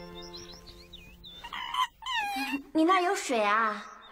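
A small monkey calling: a run of quick high squeaks, then louder squealing calls whose pitch rises, falls and wavers in the second half.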